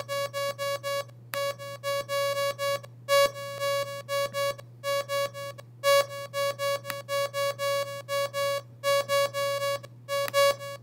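A piano-like MIDI synthesizer plays the same single note over and over, about five notes a second, with its loudness changing from note to note. A Markov probability table is setting which beats are stressed and which are unstressed. The run breaks off in several short pauses, over a steady low hum.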